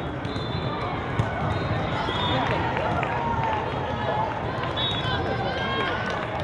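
Reverberant hubbub of a large sports hall: many overlapping voices of players and spectators talking and calling, with scattered thuds of balls from play on nearby courts.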